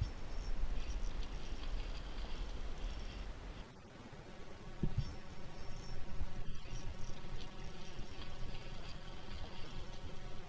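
Spinning reel being cranked during a lure retrieve, its gears giving a fast, buzzing whir in two spells with a pause and a single click about five seconds in. A low rumble lies under the first few seconds.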